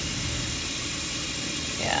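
A steady, even hiss with nothing else standing out, and a brief spoken word right at the end.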